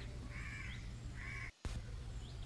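Two faint crow caws about a second apart, over low background noise.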